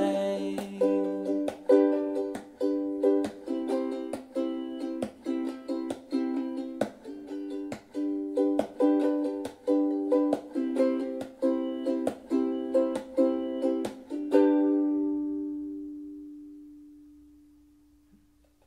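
Ukulele strummed in a steady rhythm of chords, closing on a last strummed chord about fourteen seconds in that rings on and fades away.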